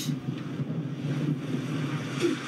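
TV drama soundtrack with no dialogue: a steady low rumble with a wash of noise above it.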